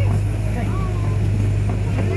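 Safari ride truck's engine running steadily, a low, even drone heard from aboard the vehicle.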